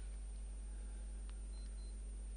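Quiet room tone under a steady low electrical hum, with a faint click just past halfway and two short, faint high beeps near the end.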